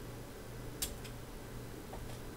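Quiet room with a steady low hum, broken a little under a second in by one short, sharp click and a fainter second click just after.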